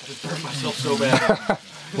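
Burger patties sizzling in a frying pan on a gas stove, under a man's voice.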